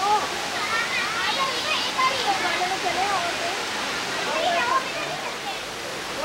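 Steady rush of hot spring water flowing over rocks, with people talking indistinctly over it.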